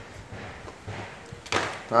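Low background room noise with a few faint handling clicks, then a man's voice starting near the end.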